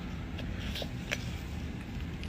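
Low steady room noise with a few faint short clicks near the middle.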